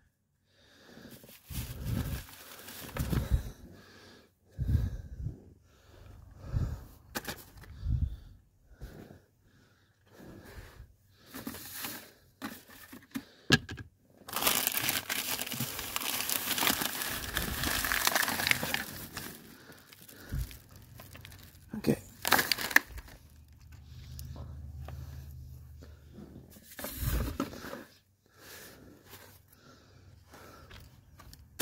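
Plastic bags and loose trash rustling and crinkling in irregular bursts as garbage is picked out of a car's interior by hand, with a longer stretch of steady crinkling about halfway through.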